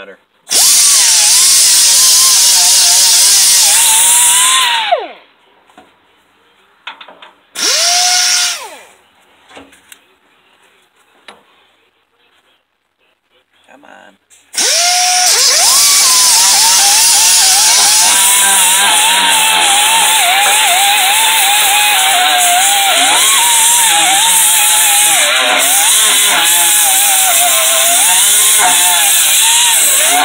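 Air-powered die grinder with a small abrasive disc grinding rust off the steel deck of a brush hog, loud. It runs in three bursts: about four seconds, a short one about eight seconds in, then a long run from about halfway on. Its whine wavers in pitch as it works.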